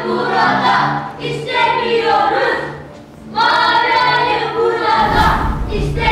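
Music with a choir singing drawn-out phrases over low held notes, pausing briefly about three seconds in; a deep bass sound comes in near the end.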